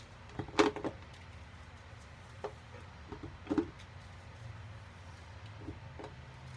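A knife blade cutting and crumbling a dry, powdery chalk-like block: short crisp crunches in two clusters, about half a second in and about three and a half seconds in, with a lighter one near the end.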